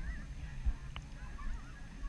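Water lapping around a half-submerged waterproof action camera: a low rumble with a click about two-thirds of a second in and scattered short gurgling chirps.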